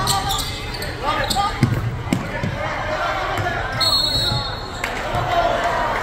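Basketball bouncing on a hardwood gym floor, several scattered thumps, amid crowd voices echoing in a large gym. A referee's whistle sounds for about a second near the middle.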